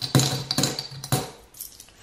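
Coins dropped one by one through the slot of a ceramic piggy bank, clinking against the coins already inside: a few sharp clinks in the first second or so, then fainter ones.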